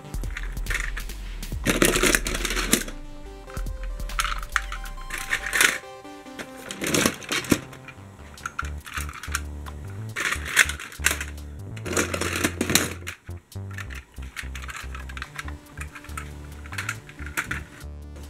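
Background music with a sustained bass line, over the clatter of toy vehicles knocking against each other and a plastic tub as a hand rummages through the pile, in several bursts of rattling.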